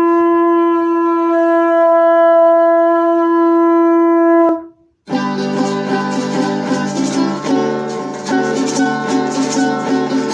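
One long, steady blast on a conch shell trumpet, held on a single pitch until it cuts off a little before halfway. After a short gap, strummed string instruments and rattles start up and play on.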